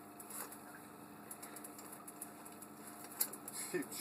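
Fishing reel being cranked as a hooked sturgeon is reeled in, giving faint, irregular clicks and ticks over a low steady hum.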